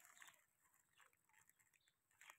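Near silence: only faint background sound.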